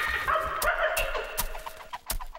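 Cartoon sound effect of chicken-like clucking for the egg responding, over a light music cue, with short ticks about three times a second that fade toward the end.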